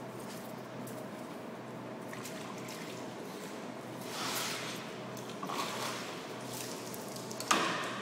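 Soft wet handling sounds of a fish fillet being cut and moved on a plastic cutting board, over a steady background hum. A sharp knock comes near the end.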